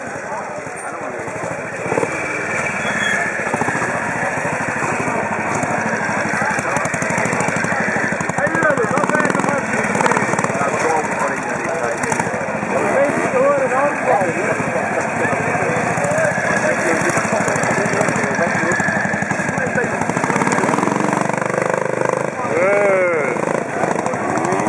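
AJS 350 trials motorcycle's single-cylinder four-stroke engine running as it is ridden through an observed trials section, with people talking over it.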